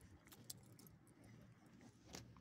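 Faint jingle of a small dog's metal leash clip and collar hardware as the dog moves, with a few light clicks, one sharper about half a second in.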